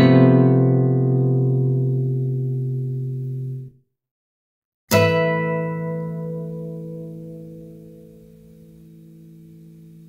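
Classical guitar sounding two chords, each plucked and left to ring. The first stops suddenly after nearly four seconds; after a second of silence, the second rings on and slowly fades.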